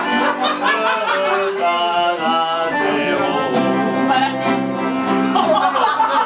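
Live acoustic nylon-string guitar and accordion playing a tune together, with the accordion holding chords under the guitar.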